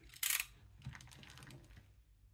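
A small plastic parts bag opened with one short, crisp rustle about a quarter second in, followed by faint small clicks and rustling as the parts are taken out and handled.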